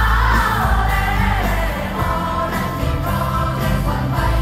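Live pop concert music: a sung melody carried over heavy bass and a steady drum beat, recorded from among the audience.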